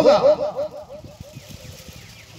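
A man's voice over a public-address system finishing a drawn-out word, followed by a fast repeating echo that dies away over about a second. After it come a few faint low knocks.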